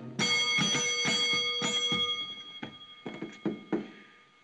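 Dome call bell on a hotel front desk rung repeatedly, about three dings a second, the ringing loud at first and fading away near the end.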